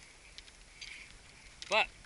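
Quiet outdoor background during a pause in a man's talk, with a faint high hum. He starts speaking again near the end.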